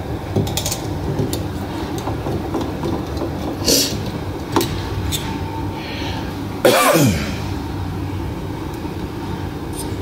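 Small clicks of hands handling the plastic parts of a headlight assembly over a steady low hum. About seven seconds in comes one loud, short throat sound that falls steeply in pitch.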